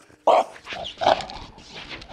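French bulldog making two short, loud, noisy vocal sounds close up, about a third of a second and a second in.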